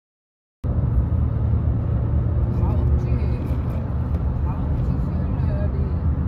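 Road noise inside a moving car's cabin: a steady low rumble that cuts in suddenly about half a second in.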